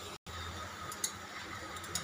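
Quiet room tone, a faint steady hiss and hum, broken by a split-second dropout at an edit cut just after the start, with a faint click about a second in.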